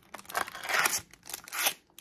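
Crinkling and rustling of trading-card packs and a cardboard blaster box being handled, in two bursts as the packs are pulled out of the opened box.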